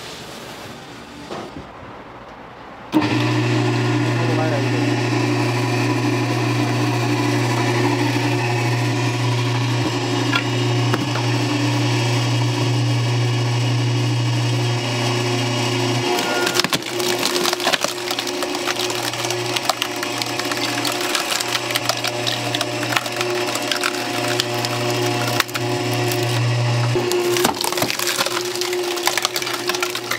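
Vertical hydraulic log splitter at work: its pump runs with a steady hum, and from about halfway through the wood cracks and splinters in many sharp snaps as the wedge is driven down through the log.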